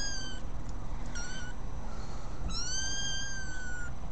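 Young kittens mewing: high-pitched, thin mews, a short one about a second in and a longer, level one in the second half.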